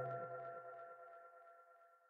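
End of the outro music: a held, ringing chord of several steady tones fades away over about the first second.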